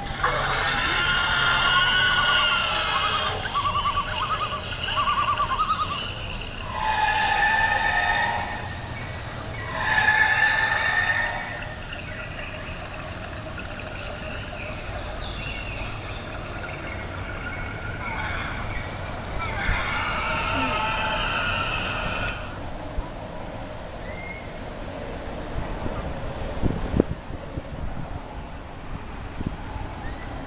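Drawn-out, high-pitched voice sounds, several long held notes over the first twelve seconds and again about twenty seconds in, over a steady low hum of a vehicle's cabin.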